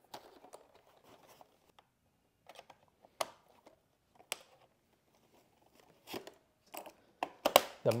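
Handling sounds: faint rustling of plastic packaging and a scattered series of sharp clicks and knocks as a plastic robot vacuum is turned over and handled in its foam-lined cardboard box.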